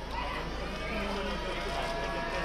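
Several people's voices talking over one another in greeting, unclear words, with a steady low rumble underneath.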